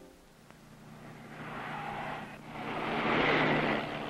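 Street traffic: two cars pass one after the other, the second louder, each swelling and fading, over a steady low engine hum.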